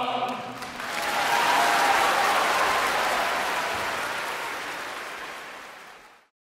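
A held sung chord from the choir ends just after the start. Audience applause then swells within about a second and fades gradually toward the end.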